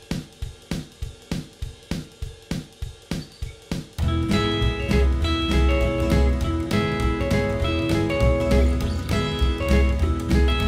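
Rockabilly backing-track drums play alone for about four seconds at about four strokes a second. Then a Fender Telecaster comes in over bass and drums, Travis-picking major 6th chords (E6, A6, B6) in E.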